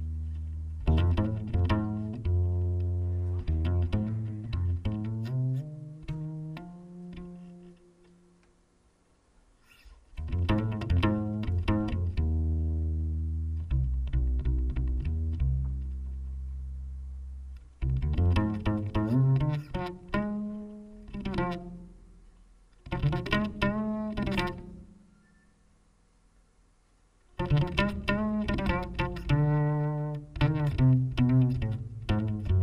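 Unaccompanied pizzicato double bass: plucked phrases with some bent notes, broken twice by short pauses where everything drops away.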